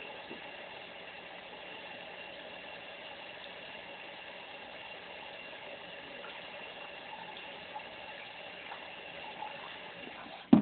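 Water running steadily, as from a tap, a continuous even rush that starts and stops abruptly.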